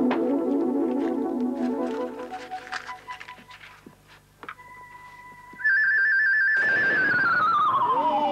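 Synthesised magic sound effect: a run of electronic keyboard notes, then a steady high beep, then a loud warbling electronic tone gliding downward over a rushing hiss. This is the effect for the Christmas pudding bursting into flame.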